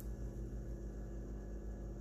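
Steady low electrical hum under a faint hiss: room tone.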